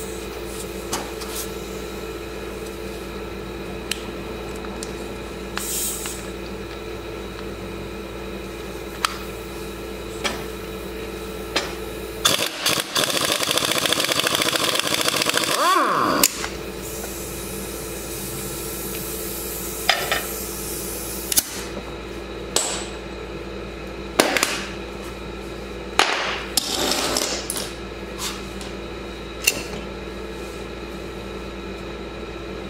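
Craftsman cordless impact wrench hammering for about four seconds at the flywheel nut of a 125cc ATV engine, its motor winding down as it stops. Before and after it come scattered metal clinks and knocks of tools and parts over a steady hum.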